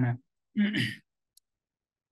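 A man's voice speaking briefly: the end of one phrase, then one more short utterance, followed by a single faint click.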